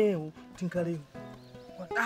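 A man speaking expressively in a local language, over quiet background music.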